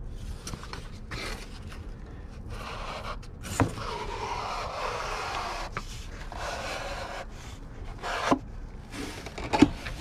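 Cardboard player-piano roll boxes scraping and rubbing as they are handled and slid out of a carton, with a longer sliding scrape in the middle. There are a few sharp knocks, about three and a half seconds in and twice near the end.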